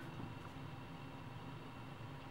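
Quiet room tone: a faint, steady hum and hiss with no distinct sounds.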